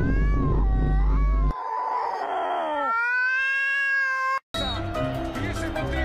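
A cat yowling in long, drawn-out meows that bend in pitch, the last one held steady for more than a second, over low background music that stops about a second and a half in. After a brief dropout about four and a half seconds in, different music and voices begin.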